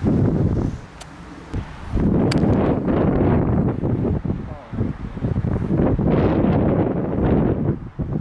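Wind buffeting the microphone in gusts, with a single sharp click of a golf iron striking the ball a little over two seconds in.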